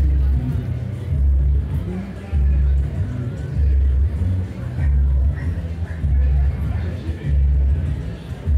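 Music with a deep, regular bass beat, one heavy bass pulse about every 1.2 seconds.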